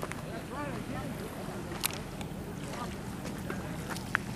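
Faint, indistinct voices in the background over a steady low hum, with a few scattered clicks.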